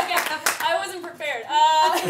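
A few sharp hand claps in the first half second, then a woman's voice vocalizing without clear words.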